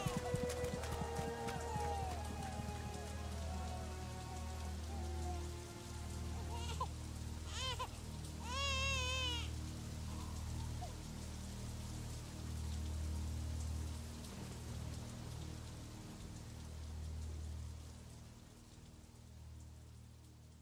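Recorded hip-hop track playing through a song's outro. Deep bass notes pulse every second or two under a steady hiss, and a wavering, voice-like high tone comes in briefly about eight seconds in. It fades out near the end.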